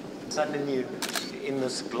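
A man speaking, with a couple of sharp clicks about a second in.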